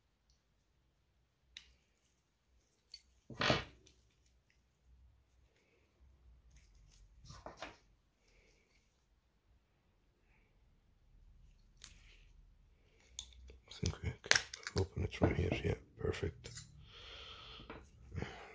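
Small handling sounds from a wristwatch being opened with a rubber ball caseback opener: scattered clicks and knocks, one louder knock about three and a half seconds in, then a busy run of clicks and rubbing over the last few seconds as the back comes off.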